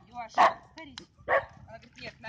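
A dog barks twice, in short barks about a second apart.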